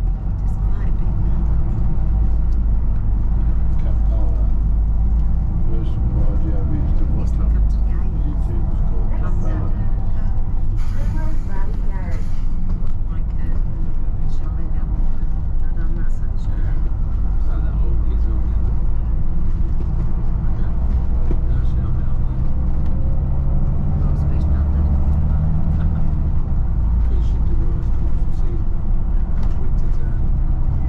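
Volvo B9TL double-decker bus heard from inside, its six-cylinder diesel engine and road noise running with a steady low rumble as it drives at speed, with a brief hiss about eleven seconds in.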